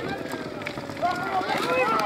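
Spectators at the rail shouting and cheering the horses on in a race finish, several raised voices overlapping and growing busier in the second half.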